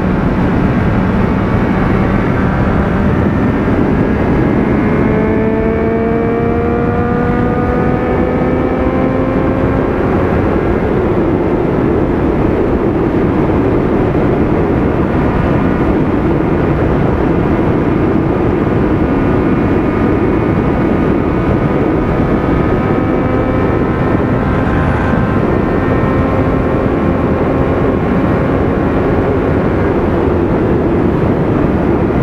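Triumph Street Triple's inline-three engine pulling at highway speed, its note rising slowly twice as the bike gains speed, over a steady rush of wind on the microphone.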